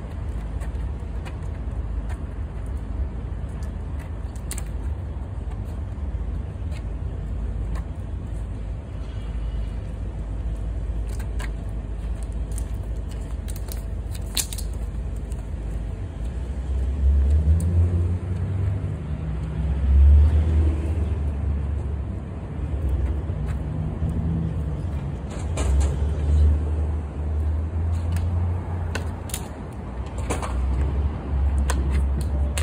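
Street traffic rumbling past, with a heavier vehicle's low engine hum building a little past the middle and staying louder to the end. A few faint, sharp clicks sound over it.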